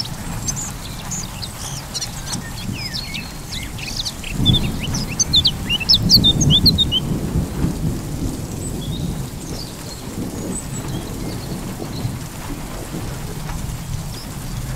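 Thunder rolling over steady rain, the rumble swelling loudest from about four to seven seconds in. Birds chirp through the first half.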